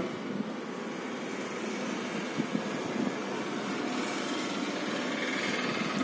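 Steady background noise, like a fan or distant traffic, with a few faint clicks about halfway through.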